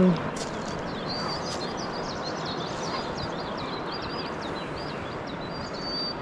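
Steady rush of water from a river rapid, with small birds chirping in short, high notes over it throughout.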